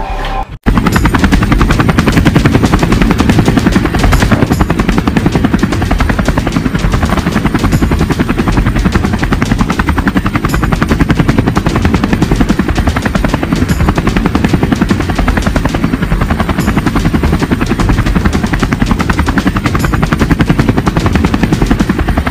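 Light helicopter hovering low, its rotor beating rapidly and steadily with the engine running underneath; the sound starts abruptly about half a second in.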